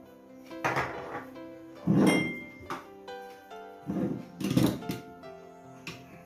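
Background music playing, with a man coughing hard in a string of short, loud coughs over it, the loudest about two seconds in.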